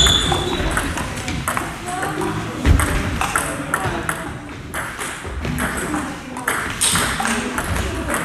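Table tennis rally: a plastic ball clicking in quick succession off the rackets and the table, with people talking in the background.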